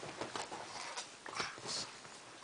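Two pugs play-fighting over a stuffed toy: a series of short, sharp breathy snorts and grunts from the dogs, several in quick succession.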